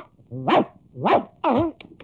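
Three short barks, each sweeping up in pitch, with brief pauses between them.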